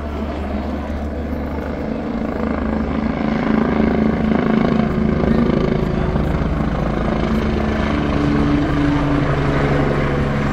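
AgustaWestland A109 twin-engine helicopter flying close overhead: the rapid beat of its four-blade main rotor over the steady engine hum, growing louder over the first few seconds and staying loud as it passes above.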